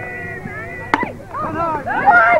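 A baseball bat striking a pitched ball once, a sharp crack about a second in, with players' and spectators' voices calling around it and growing louder after the hit.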